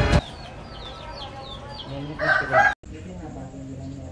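Cockatiel chirping: a quick series of short, high, falling chirps, followed about two seconds in by a louder, lower call that cuts off suddenly just before three seconds.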